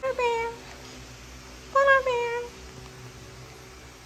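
French bulldog puppy whining twice, each a short whimper falling in pitch, the second one, starting just under two seconds in, a little longer.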